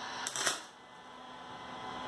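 MIG welder arc crackling in a short test bead, stopping about half a second in. The welder is feeding wire again after its wire-drive gear, knocked out of place by a worn plastic part, was set back in place.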